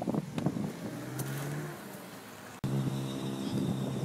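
A motor vehicle engine running at a low, even pitch. It cuts out abruptly about two and a half seconds in and resumes at once. A single sharp thud near the start as a football is kicked.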